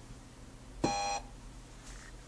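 A small rabbit-figurine RFID tag is set down on a Violet Mir:ror reader with a light tap. At once there is a single short electronic beep, about a third of a second long, as the reader detects the tag.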